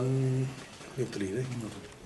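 A man's voice in a small room: a drawn-out held vowel, then a short spoken stretch about a second in.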